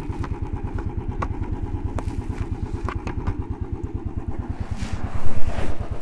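Royal Enfield Bullet's single-cylinder engine idling with a steady, even thump, with a few sharp clicks from a chest camera mount being handled.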